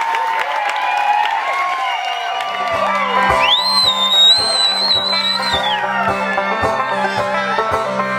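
Crowd noise at a live show, then about two and a half seconds in a band starts a song: a banjo playing over a steady low thumping beat, about two beats a second.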